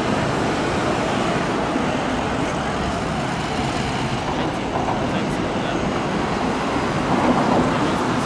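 Steady city street traffic noise as an NYPD Ford F-350 Super Duty pickup drives slowly past and pulls away, with no siren.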